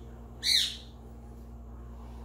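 A single short, harsh squawk from a pet parrot, about half a second in, over a steady low hum.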